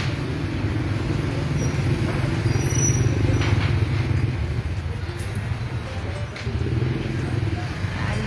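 A steady low engine rumble, like a motor vehicle running nearby.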